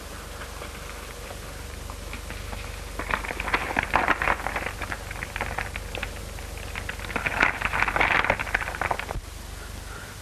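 Footsteps scrambling over a pile of loose stones, the rocks crunching and clattering in two spells of dense crackling, with a pause between them. An old optical film soundtrack's steady hum and hiss lies under it.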